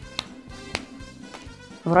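Juggling balls being caught in the hands: three sharp taps about half a second apart, over quiet background music.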